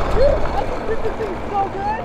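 Wind and tyre noise from a 72-volt Sur Ron-powered electric go-kart driven hard and drifting on asphalt, with a few faint short squeals.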